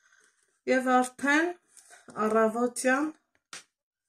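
A woman speaking Armenian in two short phrases, with one short click near the end.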